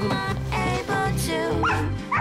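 A man imitating a dog, giving a few short dog-like calls, over background music.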